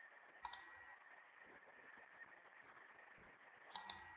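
Computer mouse double-clicking twice, once about half a second in and again near the end, each a pair of sharp clicks in quick succession, over a faint steady hum.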